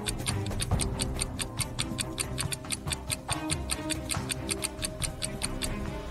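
Stopwatch-style countdown ticking, rapid and even, over quiet background music, marking the time left to solve the riddle.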